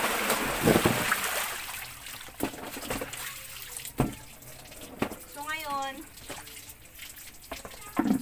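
Water splashing out as a plastic washbasin full of rinse water is tipped and emptied, loudest over the first two seconds. Then a garden hose keeps running into the basin, with a few sharp knocks of plastic tubs and laundry being handled.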